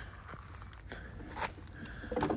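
Hand truck with a wooden platform being rolled over an asphalt driveway: faint gritty crunching of the wheels, with two light knocks about a second in and halfway through.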